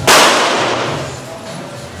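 A single pistol shot, loud and sharp, its report ringing on and dying away over about a second and a half in the roofed shooting hall.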